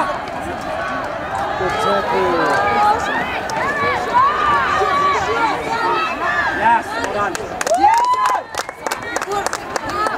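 Many overlapping voices shouting and calling, players on the pitch and people at the side of a women's rugby match, with one louder call about eight seconds in and a few sharp clicks near the end.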